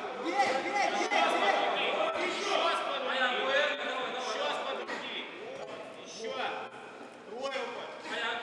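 Crowd of spectators shouting over one another, several voices at once, louder in the first half and dropping off briefly near the end.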